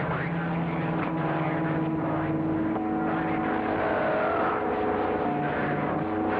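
CB radio receiver's speaker giving out steady band noise with several steady whistling tones from carriers on the channel, one coming in about halfway through. A faint garbled voice warbles through partway along.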